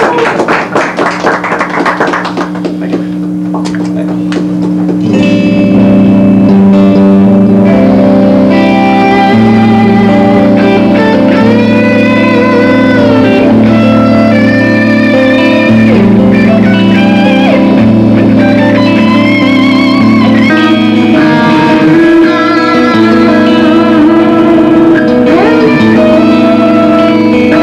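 Two electric guitars: one holds a sustained chord underneath while a lead electric guitar plays slow, singing melodic notes with string bends and vibrato, coming in louder about five seconds in. A few hand claps sound at the very start.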